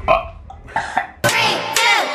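A man chugging raw egg from a glass, making a few short gulping and belching sounds from the throat. Just over a second in, electronic intro music with sweeping whooshes cuts in.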